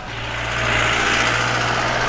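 A motor vehicle driving past close by on the road: a steady engine hum with tyre and road noise that swells to its loudest about a second in.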